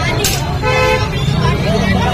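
Busy street noise: a steady low traffic rumble and people's voices, with a short vehicle horn toot lasting under half a second, about two-thirds of a second in.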